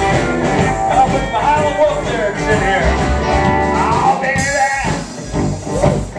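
Live blues band playing an instrumental passage: an electric hollow-body guitar plays a lead with bending, gliding notes over an upright bass. The music dips briefly about five seconds in.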